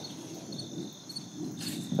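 Insects chirring steadily at a high pitch, with a brief rustle of tomato leaves being handled near the end.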